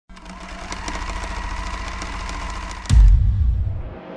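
Electronic logo-intro sting: a steady mechanical buzzing and rattling texture with quick ticks, about five a second. Nearly three seconds in, a sharp click and a loud, deep bass boom follow and fade away.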